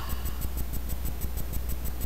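Steady low electrical hum with a faint, even ticking about ten times a second: background noise of the recording setup, with no other sound over it.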